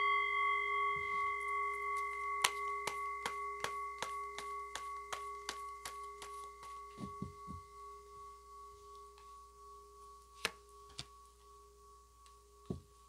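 A struck bell, singing-bowl-like, rings with several bright overtones and slowly fades away. Over it, a deck of tarot cards is shuffled by hand in a run of sharp taps about three a second, with a few more clicks later on.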